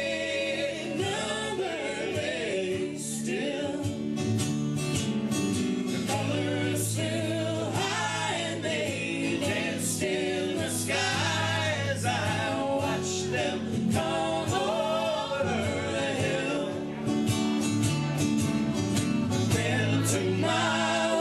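Live acoustic band song: two strummed acoustic guitars and an electric bass under voices singing together in harmony.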